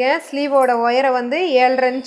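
A woman speaking continuously, explaining; only her voice is heard.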